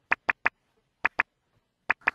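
A string of short sharp clicks with dead silence between them: three in quick succession, a pair about a second in, and one more near the end.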